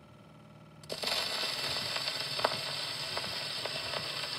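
Gramophone soundbox needle set down onto a spinning 78 rpm record about a second in, followed by steady surface hiss and scattered crackles from the lead-in groove before the music starts.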